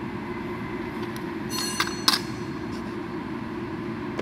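A steel vernier caliper clinks against metal a few times around the middle, each strike with a brief metallic ring, over a steady low machine hum.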